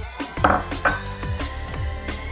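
A wire whisk clinking twice against a stainless steel mixing bowl, the two metallic hits a little under half a second apart, over background music with a steady beat.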